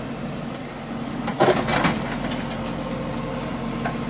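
JCB backhoe loader's diesel engine running steadily as the backhoe works, with a brief louder clatter about a second and a half in.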